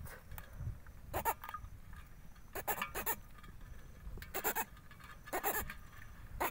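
A catfish held out of the water croaking in short rasping pulses, coming in four clusters of two to four pulses while it is handled.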